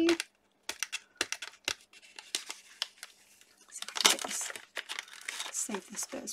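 Paper wrapping crinkling and crackling as a parcel is unwrapped by hand, in many short sharp crackles, with a louder burst of rustling about four seconds in.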